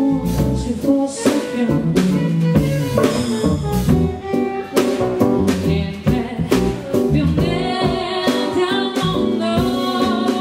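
Live band playing: a woman singing over electric keyboard, electric bass guitar and drum kit. Her held notes waver in vibrato in the second half.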